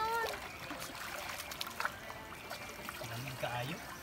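Water running steadily along a concrete channel, splashing lightly around dangling feet.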